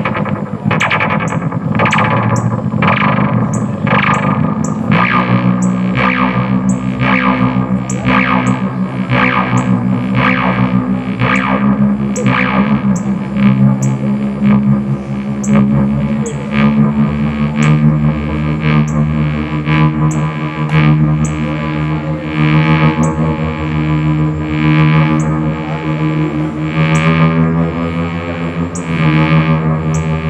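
Live electronic music from a synthesizer and effects setup: a distorted, echoing texture pulsed by sharp hits about twice a second, with a steady low drone that comes in about five seconds in.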